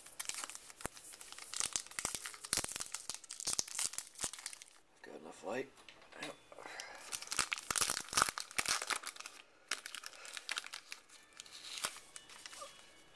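Trading card pack wrapper being torn open and crumpled: dense runs of sharp crinkling and ripping, with a short lull about halfway through.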